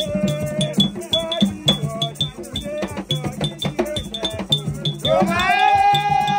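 Haitian Vodou drumming: hand drums played in a steady rhythm with a metal bell struck in time and voices singing along. A loud singing voice comes in about five seconds in.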